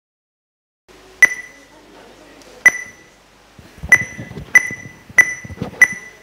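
Six sharp taps, each with a short bright ringing tone: two slow ones, then four coming faster, about two a second.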